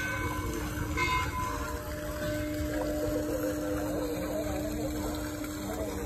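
Pond water splashing and running, with a steady low hum underneath that grows stronger about two seconds in.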